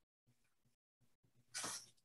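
Near silence, broken near the end by one short breathy burst from a person, such as a stifled laugh or exhale.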